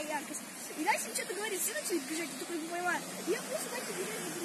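Voices talking in indistinct conversation over a steady hiss of passing street traffic.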